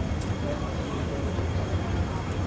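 Steady low rumble of background noise in a large hall, with faint, indistinct voices.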